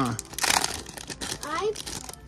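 Foil booster-pack wrapper crinkling and rustling in the hands as it is opened and the cards are pulled out, a dense run of small crackles.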